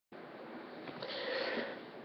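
A person sniffing through a stuffy nose close to a webcam microphone, a soft drawn-out breath that swells in the second half; the person is sick.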